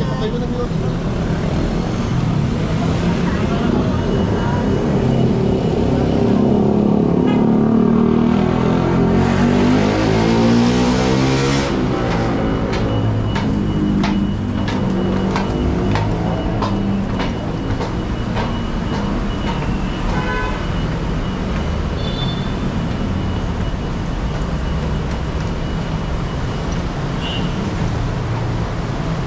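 City street traffic: vehicle engines running and passing, with one engine rising in pitch and cutting off about midway. In the second half an escalator gives a steady thin whine, with a run of clicks for several seconds.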